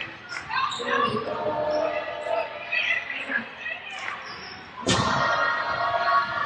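Basketball dribbling on a hardwood arena court, with voices in the hall. A sudden louder burst of noise comes near the end.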